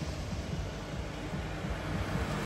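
Steady outdoor street noise on a wet road: a low rumble with a light hiss.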